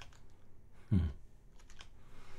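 Computer keyboard keys pressed: a few quick clicks near the start and a few more near the end, as keys are hit to switch virtual terminals. A brief, louder low-pitched sound comes about halfway through.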